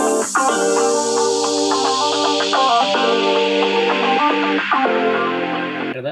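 Music with guitar played through the built-in speakers of a 2020 Intel 13-inch MacBook Pro during a speaker test, with steady notes and chords changing every second or so.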